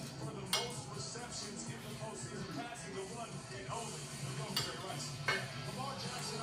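Television in the background playing a broadcast with speech and music. A spoon and fork clink sharply against a plate three times: once just after the start and twice near the end.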